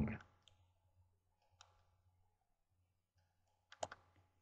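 Near silence with a few faint, sharp clicks: a single one about a second and a half in, then a quick cluster of three or four near the end.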